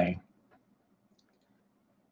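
The tail of a spoken word, then near silence with a faint low hum and a few faint clicks from a computer mouse.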